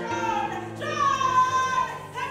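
Keyboard holding sustained chords that change twice, with a high voice singing over them. About a second in, the voice takes one long note that slides slightly down and is held almost to the end.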